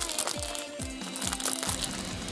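A plastic snack wrapper crinkling as it is pulled and torn open by hand, over background music with falling bass notes about twice a second.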